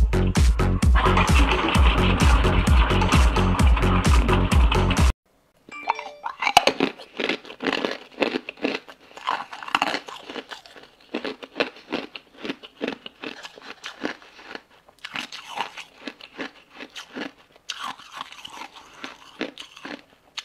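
Electronic dance music with a steady beat for about five seconds, cutting off suddenly. After a brief silence comes irregular, sharp, close-up crunching and chewing as a person bites into hard frozen pink balls of ice.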